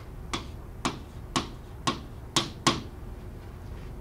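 A stylus tapping sharply on an interactive display board as a word is handwritten: about six separate clicks, one at the start of each pen stroke, spread unevenly over three seconds.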